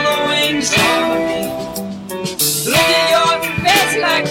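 Background music led by guitar, with sustained notes over a steady beat.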